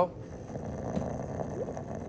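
A man snoring: a steady, low, rasping sound.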